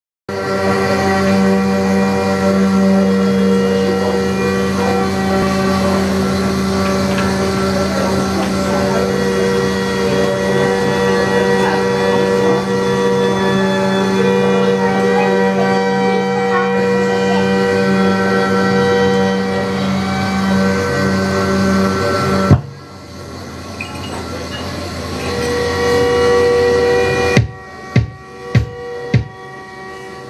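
Live experimental drone music from bowed violin, trumpet and electronics: many held tones stacked over a steady low drone. The drone stops suddenly with a sharp click about three-quarters through, a quieter swell of held tones follows, and four sharp clicks or knocks come near the end as the piece finishes.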